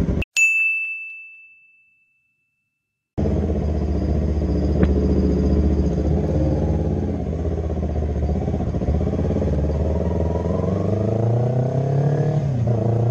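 A single bright ding rings and fades over about two seconds, followed by a second of dead silence. Then a Yamaha YZF-R3's parallel-twin engine runs steadily at idle, rising in pitch near the end as the bike pulls away.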